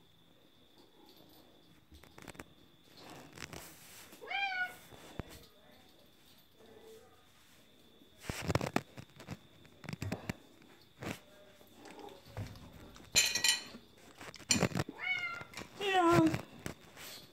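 A domestic cat meowing several times, calls that glide in pitch about four seconds in and again near the end, asking for food. A few louder bumps and rustles fall in between.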